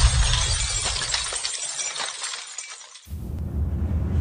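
A glass-shattering crash sound effect dying away, with scattered tinkles of falling shards, fading almost to quiet about three seconds in. Then bass-heavy music starts.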